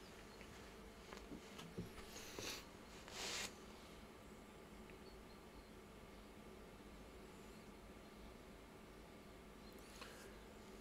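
A paintbrush working oil paint on a glass palette: a few light clicks and two short scrapes in the first few seconds, then near silence with a faint steady hum of room tone.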